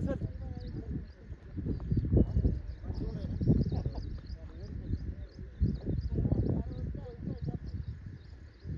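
Indistinct voices of people talking in bursts at a distance from the microphone, with short, high chirps repeating faintly behind them.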